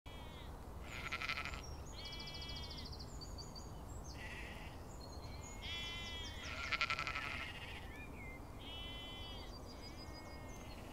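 Sheep bleating in a field, with two louder, wavering bleats about a second in and about seven seconds in, and other bleats between. Short high bird chirps sound here and there.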